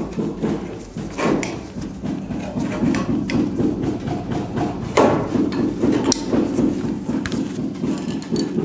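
Hand tin snips cutting up into a folded piece of 1 mm colour-coated aluminium sheet: a run of short, sharp metal snips at irregular intervals, the sharpest about five seconds in.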